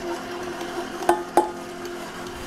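Stand mixer running on slow speed with a steady hum as flour is worked into shortbread dough, with two light clicks a little after a second in.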